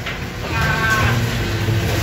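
Steady low drone of a fishing boat's engine, with a short high call about half a second to a second in.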